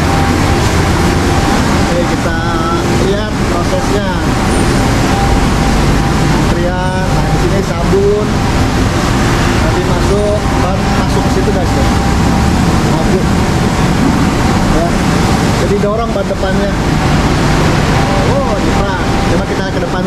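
Automatic car wash running: a loud, steady rush of water spray and machinery, with faint voices in the background.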